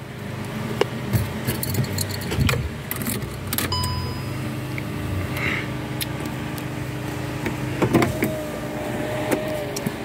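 A car key rattling and clicking in a Skoda Fabia's ignition as it is switched on, with scattered sharp clicks and a short electronic beep about four seconds in. A steady low hum runs underneath.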